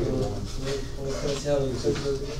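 Indistinct chatter of several students talking over one another in a classroom.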